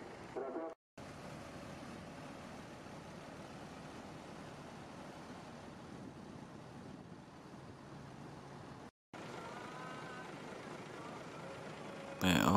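Mercedes-Benz diesel coaches running at low revs in a bus terminal, a steady low rumble with faint voices. The sound cuts out briefly twice, about a second in and about nine seconds in.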